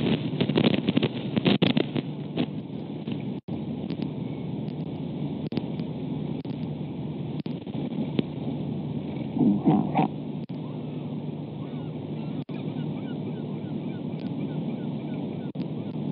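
Wind on an outdoor camera microphone: a steady rushing noise, with rough crackling gusts in the first couple of seconds and a brief louder sound about ten seconds in. Faint quick high chirps come near the end.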